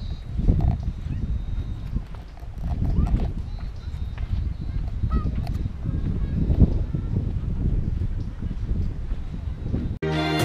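Wind buffeting the microphone: a gusty low rumble that rises and falls unevenly, with faint voices in the background.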